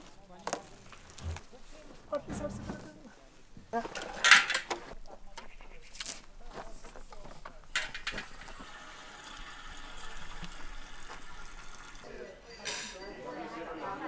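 Refuelling motorcycles from drums: sharp metallic clinks and knocks of fuel caps and cans being handled, the loudest about four seconds in, then petrol pouring into an open motorcycle fuel tank as a steady hiss for a few seconds. Voices in the background.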